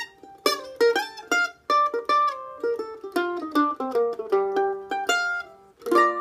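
F-style mandolin playing a picked single-note gypsy-jazz lick in B-flat with a swing feel: notes in quick succession running down in pitch, with a low note ringing under the last second or so.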